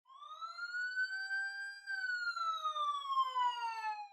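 Intro sound effect: a single siren-like whistling tone that rises for about two seconds, then slowly falls and fades out near the end.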